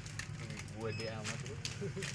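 Plastic dish-soap refill pouch crinkling lightly as it is handled, under a few quiet spoken words and a steady low hum.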